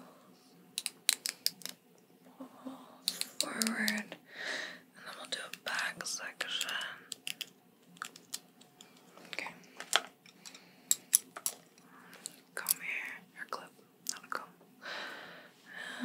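Close-miked ASMR mouth sounds and breathy whispering, broken by scattered sharp clicks that come in clusters about a second in and again about ten seconds in.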